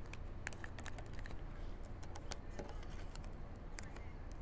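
Tarot cards being shuffled and handled in the hands: a run of light, irregular clicks and taps as the card edges strike and slide against each other.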